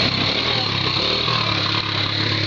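Small four-wheeler (ATV) engine running steadily as the machine drives past close by.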